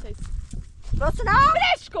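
Speech only: a woman's voice, raised and high-pitched, loudest from about a second in.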